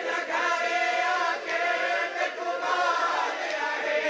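A Punjabi noha (Shia mourning lament) sung by male voices over a microphone: a lead reciter chanting with other voices joining in.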